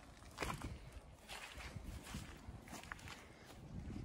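Faint footsteps through wet, soft grass, an irregular tread.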